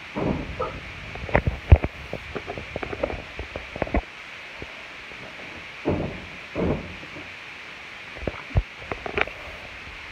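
A child tumbling and flipping on a bed: soft thumps of her body landing on the mattress and bedding rustling, the sharpest thump about two seconds in and a few more near the end.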